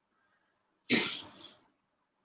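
A single loud, sharp vocal burst about a second in, dying away over about half a second with a smaller second puff.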